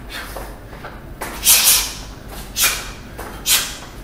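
A boxer's sharp exhalations as he punches and ducks: three short, loud hissing breaths, the first about a second in, the others roughly a second apart.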